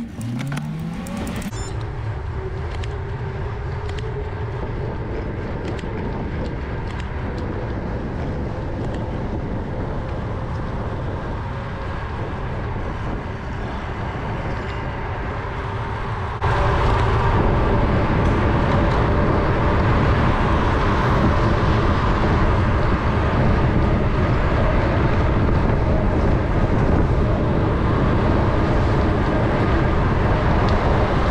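Wind rushing over a bike-mounted action camera's microphone as it rides along the road, with cars passing in the traffic lane. About halfway through, the wind noise suddenly gets louder and stays that way.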